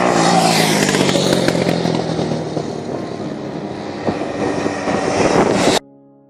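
Quad bike (ATV) engine running as it passes close by on a dirt road, its pitch dropping in the first second as it goes past. The sound cuts off abruptly near the end.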